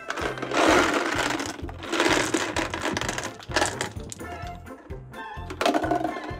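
Many small balls clattering out of a plastic jar onto carpet, coming in a few noisy bursts about a second long, over background music with a steady beat.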